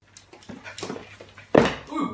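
Two small dogs, a poodle and a black dog, play-wrestling on a wooden floor, with a loud sudden sound about one and a half seconds in.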